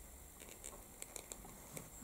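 Faint, scattered light ticks and taps as the tip of a small alcohol-ink bottle is dabbed onto the paper.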